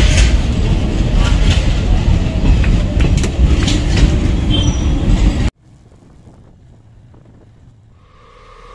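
Passenger train coaches rolling past close by, a loud continuous rumble of wheels on rail with clacks and brief wheel squeals. The sound cuts off suddenly about five and a half seconds in.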